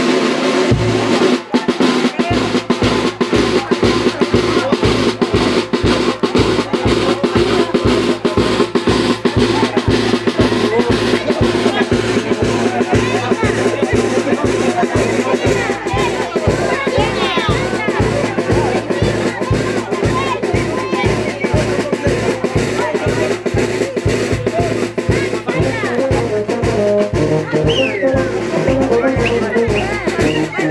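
Brass band with sousaphone and drums playing a lively dance tune. The sustained brass is joined about two seconds in by a steady, evenly spaced drum beat, with voices of the crowd over it.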